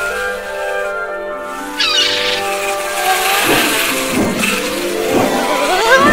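Animated-film soundtrack: sustained film-score music with sound effects laid over it, a brief high chirping call about two seconds in and several rising squeaky pitch glides in the second half.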